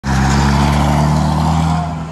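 Massey Ferguson 1200's Perkins A6.354 six-cylinder diesel engine running loud and close as the tractor drives by, a steady low note easing slightly near the end.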